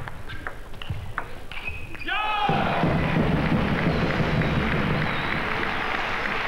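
Table tennis ball clicking off bats and table in a fast doubles rally. About two seconds in a short cry goes up and the crowd breaks into loud, steady applause as the point ends.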